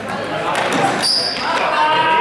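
Running footsteps thudding and sneakers squeaking on a gym floor, with a short high squeak about a second in, amid players' voices in an echoing sports hall.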